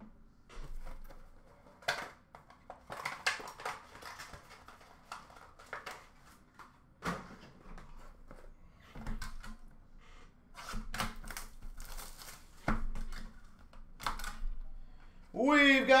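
Hard clear plastic card cases and a cardboard box being handled: irregular clicks and knocks with short bursts of rustling as cases are set down and taken out of the box.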